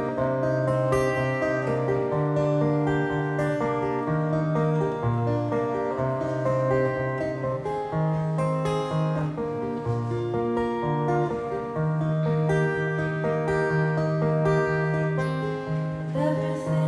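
Solo acoustic guitar playing an instrumental passage between sung verses, picked notes over a moving bass line at a slow, gentle pace.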